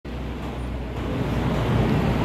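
Steady rumble of city street traffic: outdoor urban ambience with no single event standing out.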